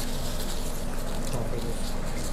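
Steady indoor room noise with a low, even hum and faint background voices.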